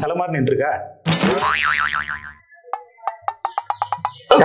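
Cartoon-style comedy sound effect: a warbling, wobbling boing lasting just over a second, followed by a quick run of short ticking, plucked notes.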